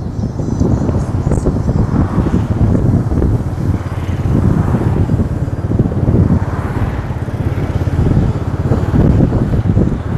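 Motor vehicle travelling along a road, heard from on board: a steady engine and road rumble, with wind noise on the microphone.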